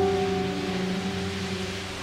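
Background music: a single held piano note dying away slowly, over a steady faint hiss.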